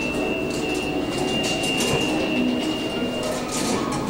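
Subway train in a station, heard as the soundtrack of a video playing through room speakers, with a steady high whine that stops about three seconds in.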